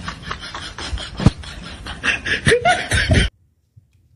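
A person snickering and laughing in short breathy bursts, with a few voiced sounds near the end, cut off abruptly a little over three seconds in.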